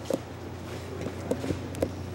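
Footsteps of several people walking on a concrete floor: irregular heel strikes and scuffs over a steady low hum.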